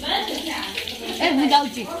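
Indistinct voices of people talking close by, one higher voice rising and falling about a second in.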